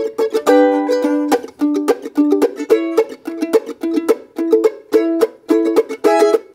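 F-style mandolin comping chords with a pick: short strummed chord strokes, about two to three a second, in a steady bluegrass rhythm.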